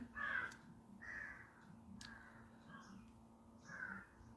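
A crow cawing faintly in the background, about five short caws spread across the few seconds.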